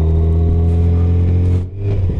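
2018 Yamaha FJR1300's inline-four engine running steadily under the rider on the road, a low even engine note that dips briefly near the end and picks up again.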